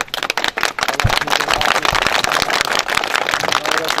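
A crowd of people clapping, many quick overlapping claps, with voices in the crowd and a single low thump about a second in.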